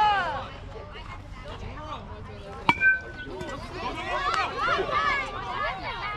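A metal youth baseball bat hits a pitched ball once, about three seconds in, with a sharp ping that rings briefly. Spectators' voices call out around it.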